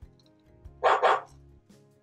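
Two quick barks for a dog puppet, one right after the other about a second in, over quiet background music.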